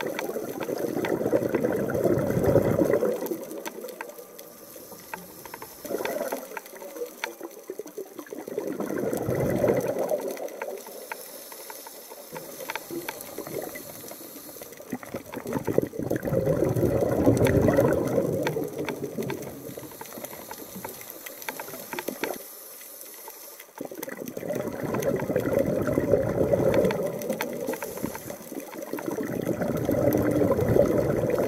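Water rushing and bubbling against an underwater camera, in slow surges that swell and fade every few seconds.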